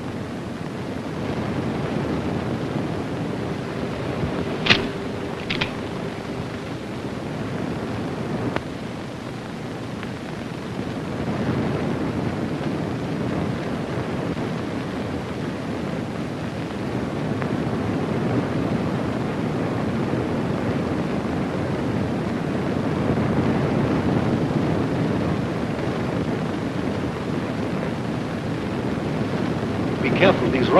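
Steady rushing of a waterfall, swelling a little over time, with two sharp clicks about five seconds in and another a few seconds later.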